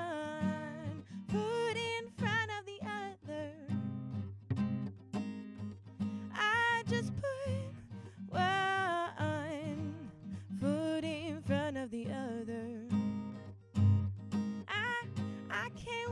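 Steel-string acoustic guitar strummed steadily with a woman singing over it in long, wavering held notes that come and go every couple of seconds.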